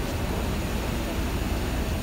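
Large diesel bus engine idling: a steady low rumble with a hiss over it.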